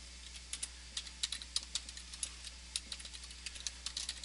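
Computer keyboard being typed on, keys clicking in an irregular run of keystrokes over a steady low hum.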